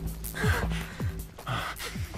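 Dramatic background music with a sustained low chord, and two gasping breaths about half a second and a second and a half in.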